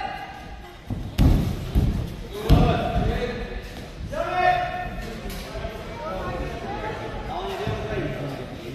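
Heavy thuds of bodies and feet landing on the competition mat as two aikido randori competitors grapple, three loud ones between about one and two and a half seconds in, echoing in a large hall. Voices call out just after the thuds.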